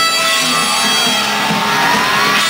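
Live rock band playing a passage without vocals: electric guitars over drums, with a gliding guitar note near the end.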